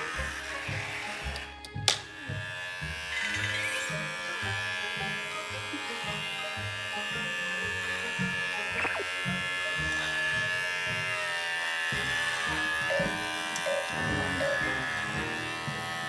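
Cordless electric pet clipper running steadily as it trims a Maltese's fur, under background music.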